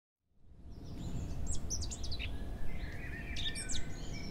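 Birds chirping and whistling over a steady low outdoor rumble, fading in about half a second in: short high chirps in quick runs, with a longer held whistle in the middle.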